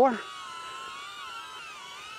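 Two small selfie drones, a DJI Neo and a HoverAir X1, hovering with a steady high propeller whine. Its several pitches waver and cross as the motors adjust.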